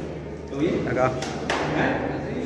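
Indistinct voices of people talking, not close to the microphone, with a couple of sharp clicks or knocks about a second and a half in.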